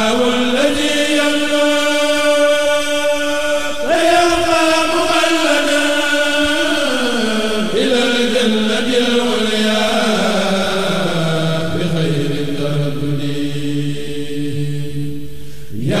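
A single voice chants Arabic religious verse in long, drawn-out, wavering notes. A new phrase begins about four seconds in, and the voice pauses just before the end.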